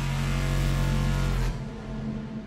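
A loud designed sound-effect hit: a low droning chord under a wide rushing noise, which cuts off suddenly about a second and a half in and leaves a quieter wind-like rush with a low hum.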